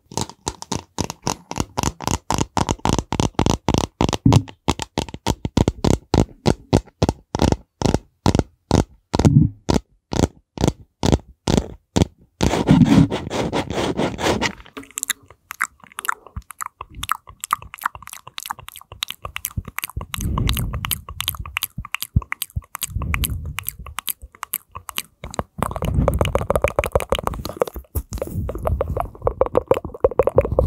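Fingers scratching and tapping right at a microphone in a fast, even rhythm for about the first twelve seconds. Then hands cupped over the microphone rub and shift, giving an uneven crackle with muffled low swells.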